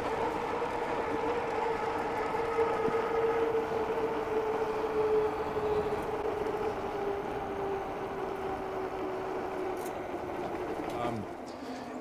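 KBO K2 e-bike's electric drive motor whining steadily over a rush of tyre and wind noise. Its pitch slowly falls as the bike slows from about 21 to 13 mph, and the whine fades out near the end.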